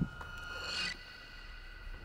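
Soft rustling and scraping as a man in work gloves crouches down in front of a wood stove on a wooden parquet floor: his clothing and shoes moving. It is loudest in the first second, then settles to quiet room tone.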